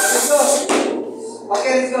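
Several children shouting and calling out over one another, with a short hissy burst of noise in the first half-second, a brief lull, and the voices picking up again about halfway through.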